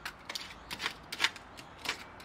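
Utility knife blade scraping along the joint between an aluminium window frame and a concrete sill, cutting through the old seal in about half a dozen short, irregular scratchy strokes.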